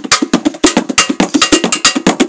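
Fast percussion: sharp cowbell-like metallic strikes at about seven a second, in a steady rhythm.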